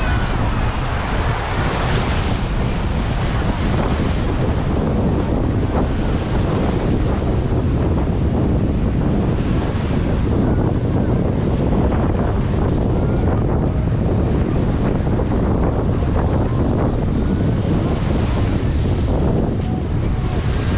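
Wind buffeting the microphone over waves washing on a beach, a steady rumbling noise with no letup.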